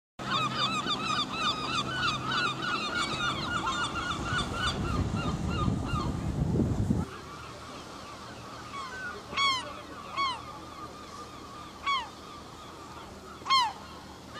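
Gulls calling at a cliff colony: a dense chorus of many short, overlapping downward calls over a steady rushing noise. After an abrupt cut about halfway, a few single, louder calls follow, one every second or two.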